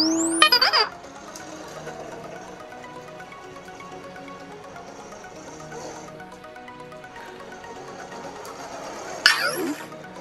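BB-8 droid beeps and warbling electronic chirps from the Sphero BB-8 app, with a quick rising whistle in the first second and a run of rapid falling sweeps near the end. In between, quieter steady music plays from the app.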